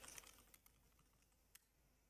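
Faint computer keyboard keystrokes as a command is typed: a few scattered clicks, most of them in the first second.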